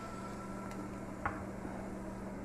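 Pot of sinigang broth boiling on the stove: a steady bubbling hiss over a low steady hum, with one small click a little past halfway.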